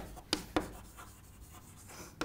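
Chalk writing on a chalkboard: two short sharp taps in the first second, then faint scratching.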